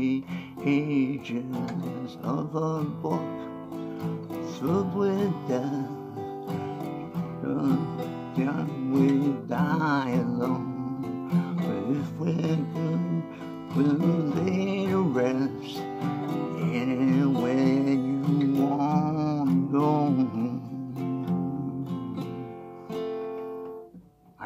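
Steel-string acoustic guitar strummed through a slow A minor, G, E minor 7th, F chord progression, with a man's voice singing along at times. The playing stops just before the end.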